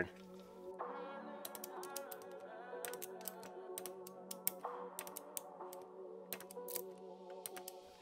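Ratchet of a click-type torque wrench clicking in short irregular runs as cylinder head nuts are tightened in a crisscross pattern to 15 foot-pounds, under quiet background music.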